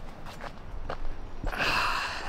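Footsteps on a dirt path, a few soft steps, followed near the end by a breathy exhale.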